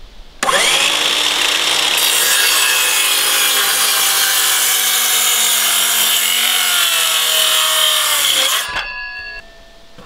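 Circular saw starting about half a second in and cutting through a wooden board for about eight seconds, then switched off near the end, its blade winding down.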